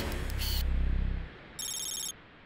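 Logo sound effect for an animated end card: a low humming swell lasting just over a second, then a short, bright, high-pitched electronic chime near the end.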